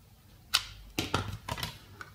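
Sharp plastic clicks and knocks as plugs are pulled out of and pushed into a cheap plastic universal travel adapter, about five clicks starting about half a second in.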